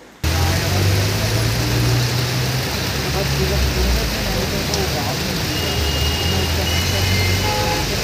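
Heavy rain pouring onto a waterlogged road, a steady hiss, over the low rumble of engines and tyres of traffic driving through the water.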